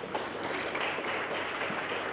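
Audience applauding, a steady even clatter of many hands clapping.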